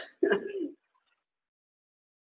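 A man's short laugh after a coughing fit, ending about three-quarters of a second in, then silence.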